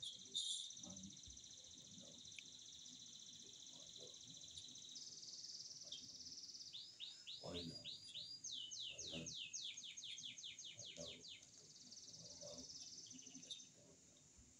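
Faint, steady high-pitched insect trilling on two pitches. From about the middle, a rapid series of descending chirps joins in, coming faster, about five a second, before stopping well before the end.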